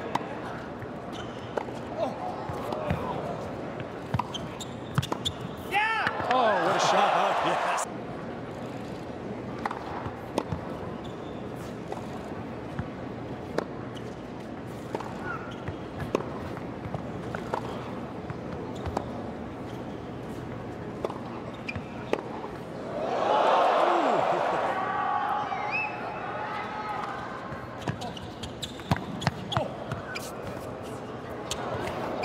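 Tennis rallies: a series of sharp ball strikes off rackets and bounces on the court over a steady crowd murmur. Two louder swells of crowd cheering and shouting come about six seconds in and again around 23 seconds.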